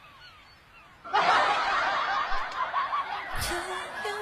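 A young woman giggling: a quick run of breathy laughs that starts suddenly about a second in, with a single thump near the end.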